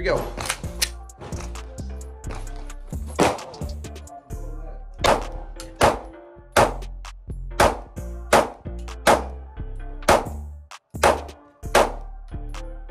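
A 9mm Glock 19X pistol fitted with a Radian Ramjet and Afterburner compensator fired in a string of single shots at uneven intervals, about a dozen or more in all, with background music.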